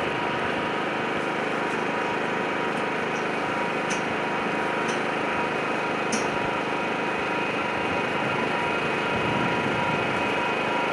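A small engine running steadily with a constant hum, a few faint clicks over it.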